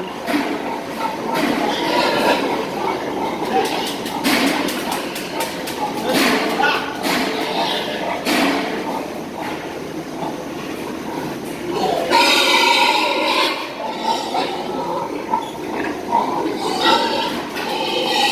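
Pregnant sows in steel gestation crates grunting and squealing as they are driven out, with metal knocks and clanks from the crate bars between about four and eight seconds in. About twelve seconds in comes a louder, drawn-out high squeal.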